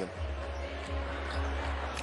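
Basketball arena ambience: a steady crowd murmur over a low hum, with faint music.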